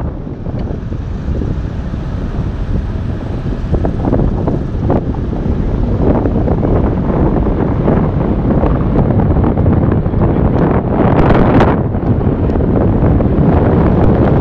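Wind rushing over the microphone from a moving car, with road noise underneath. It grows louder about four seconds in, with a few stronger gusts near the end.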